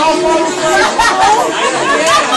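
A crowd of teenagers' voices talking and calling out at once, many conversations overlapping.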